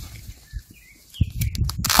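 A few faint bird chirps, then from about a second in a rustling scrape of a black fabric grow bag being handled and cut with a knife.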